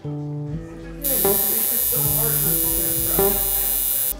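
Coil tattoo machine buzzing steadily as it works on skin, starting about a second in, over background guitar music.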